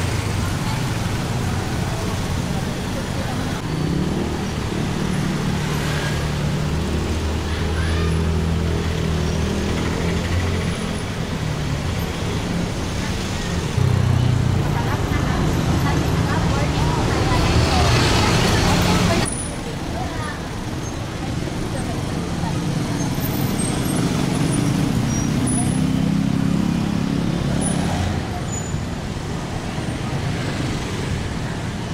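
Busy city street traffic: motorcycles and motorcycle-sidecar tricycles running past along with cars, a steady mix of small engines. It grows louder in the middle and drops back suddenly a little before halfway through the second half.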